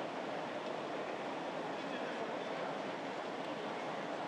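Steady background noise of open microphones in a large legislative chamber, with faint indistinct voices.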